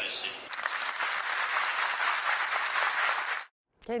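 Theatre audience applauding, a dense even clapping that stops abruptly near the end.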